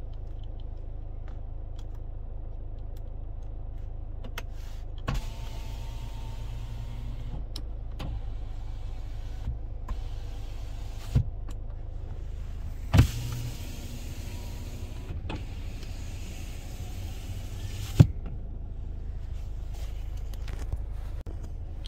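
Kia Sorento's front passenger power window motor whining as the glass travels for about eight seconds and stops with a thud, then running again for about five seconds and stopping with a louder thud, over a steady low hum.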